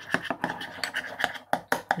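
Metal teaspoon scraping and tapping against a small glass bowl while stirring honey and lemon juice into a paste, a rapid, irregular run of short scrapes and clinks.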